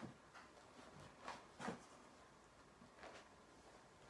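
Near silence, broken by a few faint, brief rustles and soft knocks from a bag of books being lifted by its handles.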